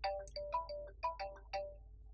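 Mobile phone ringtone playing a quick melody of about eight short notes, stopping near the end.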